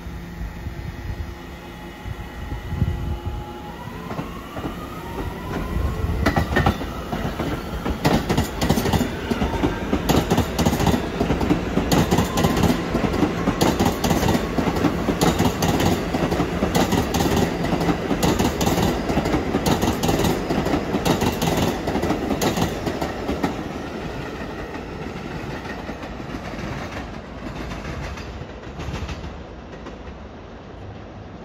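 New York City Subway train pulling away with a rising motor whine, then passing close by with loud, rhythmic wheel clatter over the track. The clatter fades away near the end.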